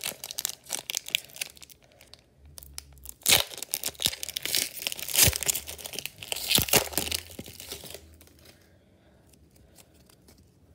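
Foil wrapper of an Upper Deck hockey card pack being torn open and crinkled by hand, with several louder sharp rips in the middle. The crackling stops about eight seconds in as the cards come out.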